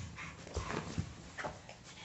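A small fluffy white dog making faint short whimpering sounds as it wrestles with a baby, with a few soft bumps of movement on a bed.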